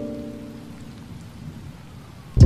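Steady rain ambience, with the last held notes of a mellow lofi tune fading out in the first half.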